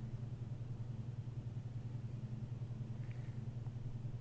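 Room tone: a steady low hum with no other sound beyond a faint tick about three seconds in.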